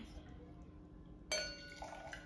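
A wine glass clinks once, about a second in, and rings briefly with a clear, glassy tone.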